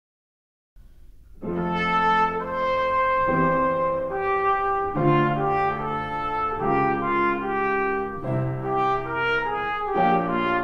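Trumpet playing a slow melody of long held notes, coming in about a second and a half in after silence.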